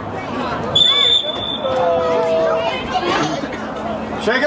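A referee's whistle blown once, a short steady blast about a second in, over spectators talking and calling out.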